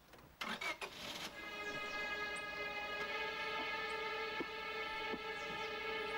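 A car engine starting, a short rough burst about half a second in, followed by dramatic string music holding a sustained chord.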